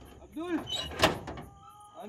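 A corrugated sheet-metal gate being unlatched by hand: one sharp metallic clack about a second in.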